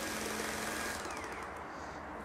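Viper Mini pretreatment machine running at its 20% wheel-speed setting: a hissing, whirring motor sound with a faint low hum. It eases off about a second in, leaving a faint falling whine.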